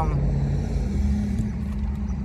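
A car engine idling, a steady low hum heard from inside the vehicle's cabin.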